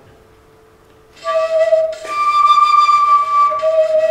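An aluminium forearm crutch blown across like a transverse flute, giving a breathy, flute-like tone. About a second in it sounds a low note, jumps up an octave and holds it, then drops back to the low note near the end.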